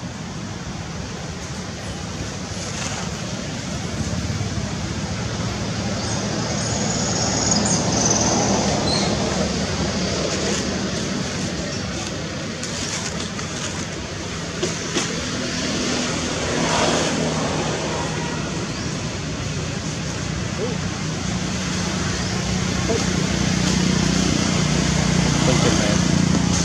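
Steady outdoor background noise of distant traffic with indistinct voices of people in the background.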